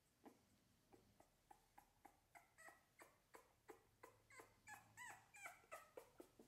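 Three-week-old American Bully puppy giving quiet, short, high-pitched cries, about three a second, growing louder toward the end.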